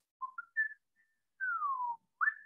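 A person whistling a few short notes that step upward, then one long note sliding downward near the end.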